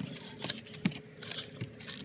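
Dry-fitted PVC drain pipe and fittings being twisted and pulled apart by gloved hands: plastic rubbing, with a few light clicks and knocks.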